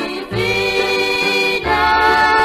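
Female gospel vocal group singing a hymn in harmony over instrumental accompaniment with bass, holding long notes; the chord changes about three-quarters of the way in.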